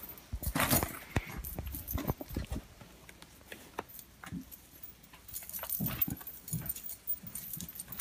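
Irregular rustling and handling noise with light metallic clinks of stacked silver bangle bracelets as hands tie leather boat-shoe laces.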